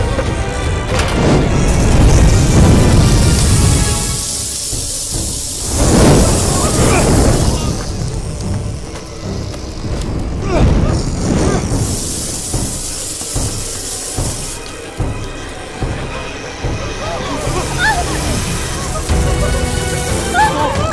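Action film soundtrack mix: a tense music score with heavy booming and crashing effects. Shouted, screaming voices come in near the end.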